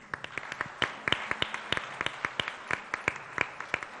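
Audience applauding: many hands clapping together, with individual sharp claps standing out over a steady wash of clapping.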